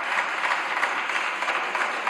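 Applause from many people at once: a dense, steady patter of clapping.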